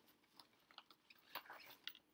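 Near silence with a few faint, short clicks and rustles of paper being handled: loose printed pattern chart pages.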